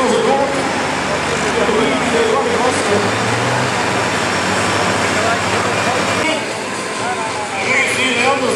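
Diesel farm tractor engine running hard under load as it drags a pulling sled near the end of its run, with a voice talking over it throughout. About six seconds in, the sound cuts abruptly to a quieter engine.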